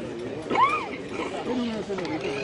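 Several people talking at once in the background, with no clear words; one voice rises and falls in pitch about half a second in.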